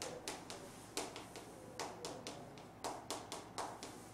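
Chalk writing on a blackboard: an irregular run of sharp taps and short scratches, a few a second, as each stroke of the letters is made.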